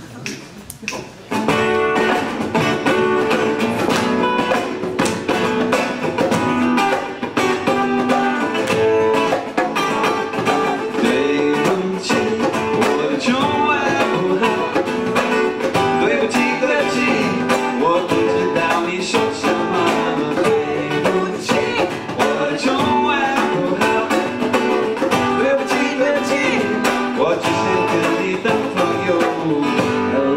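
Acoustic rock band playing a song, led by strummed acoustic guitar. It starts about a second and a half in.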